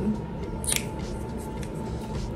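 A single short plastic click about two-thirds of a second in, as the cap of a liquid blush tube is handled and closed.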